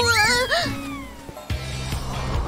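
A girl's whiny, wavering "uh", followed by a falling whistle-like tone that slides down over about a second. Background music with a steady low bass comes in about one and a half seconds in.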